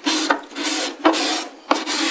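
Steel cabinet scraper with a freshly rolled burr being pushed across a wooden panel, about four scraping strokes in two seconds, each taking fine shavings.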